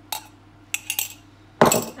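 A metal spoon clinking against a ceramic mug and mixing bowl as coffee is scraped out into cake batter: a few light clinks, then one louder clatter near the end.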